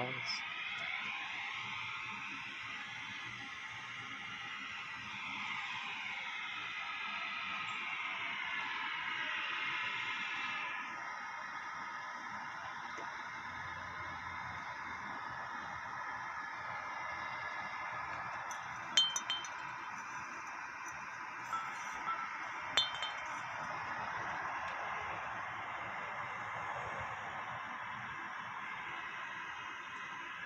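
Wind chimes ringing steadily in many overlapping high tones, with a few sharper clinks near the middle.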